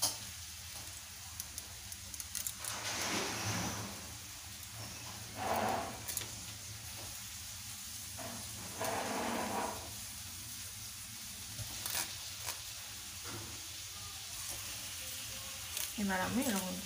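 Hands rubbing and scraping a raw hilsa fish, three rustling swishes a few seconds apart with a few faint clicks, over a low steady hum.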